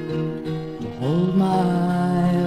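A woman singing a folk song to her own acoustic guitar: a long held note, then about a second in her voice slides up into a new sustained note over the guitar.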